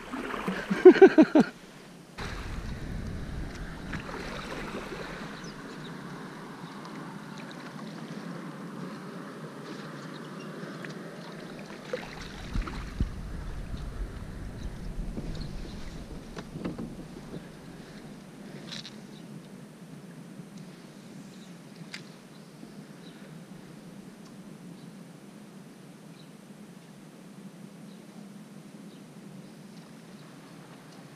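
A kayak being paddled: water swishing and lapping around the paddle and hull, with low wind rumble on the microphone through roughly the first half, then quieter water sounds with a few small clicks.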